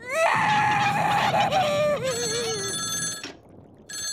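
A cartoon girl's loud wailing cry for about two seconds, ending in a falling sob. Then an old rotary telephone's bell rings for about a second, and rings again at the very end.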